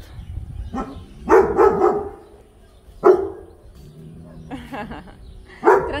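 A German Shepherd barking: three loud barks a couple of seconds apart, the first one longer.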